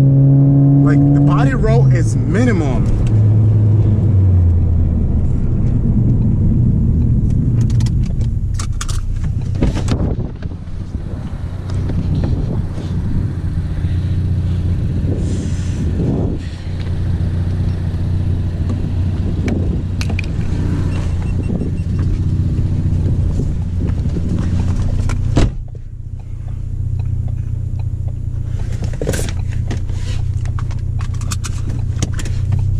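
Ford Focus ST's turbocharged four-cylinder engine heard from inside the cabin while driving: the engine note falls over the first few seconds, then settles into a steady cruising drone over tyre and road noise. A few sharp knocks come through the car, one about ten seconds in and two near the end.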